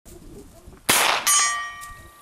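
A single 9mm shot from the CZ Scorpion EVO 3 S1 carbine, then about a third of a second later the bullet strikes a steel silhouette target, which rings with a clear metallic tone that slowly fades.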